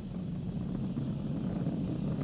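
Falcon 9 rocket's nine Merlin 1D first-stage engines heard from the ground as a steady low rumble.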